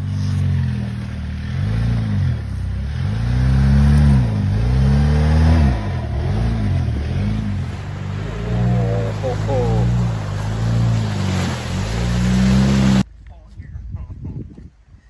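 Jeep Wrangler JL Unlimited engine revving up and down repeatedly as it drives through shallow water on a trail, over a steady rush of tyre and water noise. The sound cuts off abruptly near the end.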